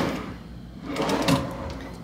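A dresser drawer sliding shut, about a second in.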